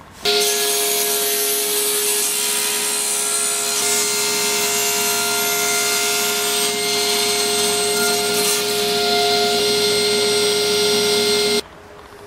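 Table saw running with a steady whine while crosscutting a block of oak 2x4 on a sled. It begins and cuts off suddenly.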